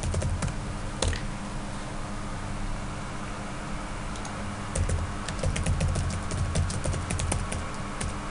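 Typing on a computer keyboard: a few keystrokes with a heavier stroke about a second in, then a pause, then a fast run of keystrokes in the second half. A steady low hum runs underneath.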